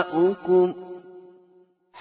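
A man reciting the Quran in measured tarteel style. His voice finishes a word in two short sung syllables, then fades away into a brief pause before the next phrase begins.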